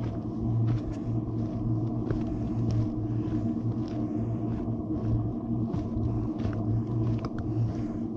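Footsteps on a rocky dirt trail, about one step every two-thirds of a second, over a steady low hum that is the loudest part of the sound.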